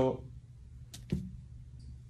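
A word ends, then a pause in the talk: low steady room hum, with two short clicks close together about a second in.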